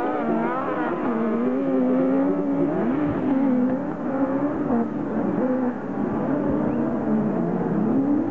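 1600 cc autocross buggy engines revving hard on a dirt track, their pitch rising and falling as the drivers work the throttle, with more than one engine heard at once.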